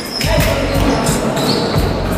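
A basketball bouncing repeatedly on a wooden sports-hall floor as it is dribbled up the court.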